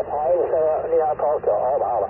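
Another ham's voice received over the radio and heard from the transceiver's speaker: thin, narrow-band speech over background band noise, reading out a signal report in numbers.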